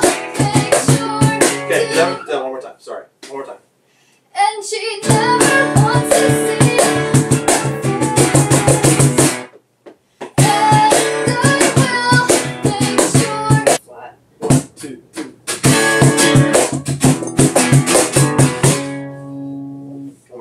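Acoustic guitar strummed with a cajón (box drum) slapped by hand in a steady rhythm, and a woman singing over them. The playing breaks off twice for about a second and starts again, then ends on a ringing chord near the end.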